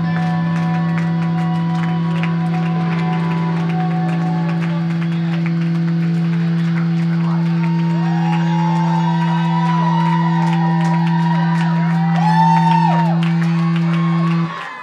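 Live rock band with electric guitar holding a sustained low drone, loud and steady, with guitar notes bending up and down in arcs above it from about halfway in.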